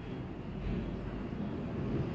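A low, steady rumble that grows a little louder about half a second in.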